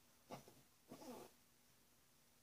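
Two faint cat meows: a short one about a quarter second in, then a longer one about a second in that falls in pitch.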